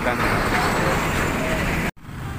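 Loud, steady road-traffic noise as a Hino Ranger fuel tanker truck passes close by, its engine and tyres mixed with the surrounding traffic. The sound cuts off abruptly just before the end.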